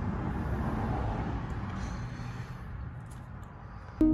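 Road traffic noise: a steady rumbling hiss of vehicles on the street, fading over the second half.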